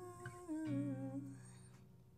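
A woman sings one drawn-out, wavering note over a Yamaha acoustic guitar. A chord is strummed about two-thirds of a second in and rings on, fading as the voice trails off.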